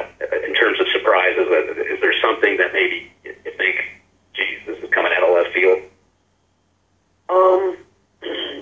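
Speech over a telephone line on a conference call, thin and cut off above the phone band: a caller asking a question. The voice stops about six seconds in and, after a second-long silence, a few more words come near the end.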